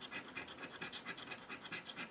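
Black handheld scratcher tool scraping the coating off a lottery scratch ticket in quick, light back-and-forth strokes, about eight a second.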